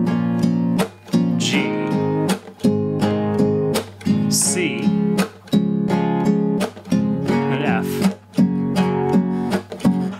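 Nylon-string classical guitar, capoed at the first fret, strummed with fingernail flicks down and up in a steady rhythm broken by muted strokes, playing through the A minor, G, C and F chords.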